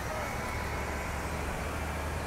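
Steady city street traffic noise: a continuous low rumble of vehicles with a faint hum over it.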